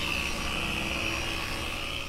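Electric car polisher with a foam pad running steadily against the paintwork with a constant high whine, machine-polishing the paint to remove wash marks.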